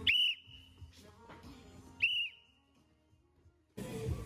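Two short blasts on a metal whistle, about two seconds apart, each a high steady tone. Near the end comes a louder, noisier passage.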